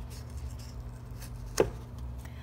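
A sheet of watercolour paper being picked up and handled off a cardboard surface: faint rustling, with one sharp tap about one and a half seconds in.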